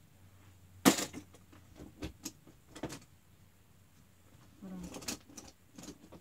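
Handling noise: a sharp click about a second in, followed by a few lighter clicks and knocks, as small plastic toys are moved about by hand.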